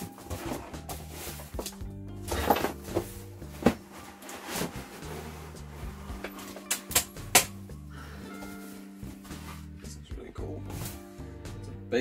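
Cardboard box and polystyrene foam packaging being handled as a power inverter is pulled out of its box, with rustling, scraping and several sharp knocks, over background music with a steady bass line.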